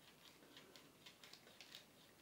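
Near silence, with faint scattered small clicks of a small plastic eyeglass-cleaning roller being handled against a pair of plastic-framed glasses.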